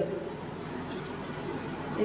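Room tone: a steady low hum with a faint, even hiss and a thin, high-pitched steady whine.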